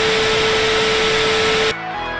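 TV static sound effect: a loud even hiss with one steady beep held under it, the glitch sound that goes with colour bars and a lost signal. It cuts off suddenly near the end, and music starts.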